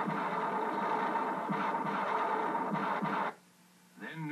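Western action soundtrack playing through a television speaker: a dense, noisy clamor with a few sharp hits, which cuts off to near silence a little over three seconds in.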